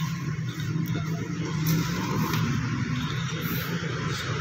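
An engine running steadily, a low continuous hum with no change in speed.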